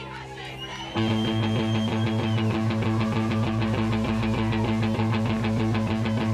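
A live rock band starts a song about a second in, going from a quieter sustained sound to full volume: loud sustained low notes over a fast, steady drum pulse.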